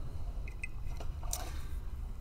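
Faint handling sounds of a fencing body cord's plug being pushed into the socket of a foil under its guard, with one sharper click a little past halfway, over a low steady hum.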